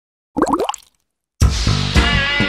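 A short cartoon bubble sound effect: a few quick rising plops. Music starts suddenly about one and a half seconds in.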